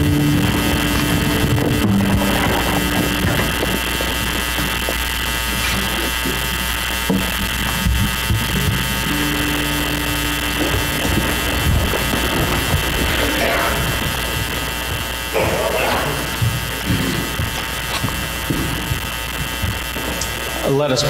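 A congregation settling into its seats: scattered rustling, shuffling and small knocks in a large room, over a steady electrical hum, with a few soft held notes.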